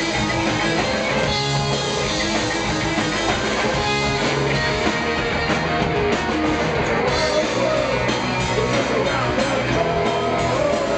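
Punk rock band playing live and loud: distorted electric guitar, bass and drums, with a man singing lead into the microphone.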